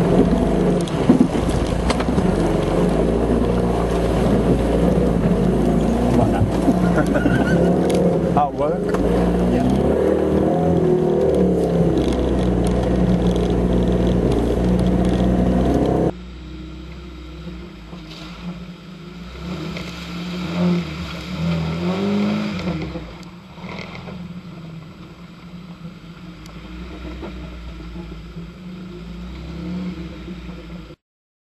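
Off-road 4x4's engine running under load as it drives through deep muddy water, with water washing over the windscreen. About halfway through it cuts abruptly to a quieter engine whose revs rise and fall a few times as the vehicle drives over a dirt track.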